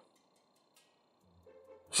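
Near silence, with a faint, brief low sound shortly before the end.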